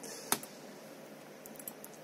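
A computer mouse click starting a Cinebench benchmark run, sharp, about a third of a second in, followed by a few fainter clicks near the end. A faint steady hiss from the PC's air-cooler fan runs behind.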